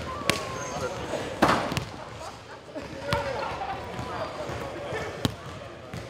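Basketball bouncing on a hardwood gym floor in separate sharp strikes, with one louder, fuller hit about one and a half seconds in. Players' voices and shouts sound between the strikes.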